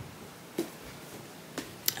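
Quiet room tone broken by a soft knock about half a second in and two sharp clicks near the end.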